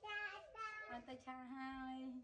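A young child's voice singing in drawn-out, sing-song notes, with one note held near the end.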